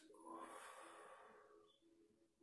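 A man's faint, long out-breath, fading away over about a second and a half, exhaling on the effort of a seated side bend against a resistance band.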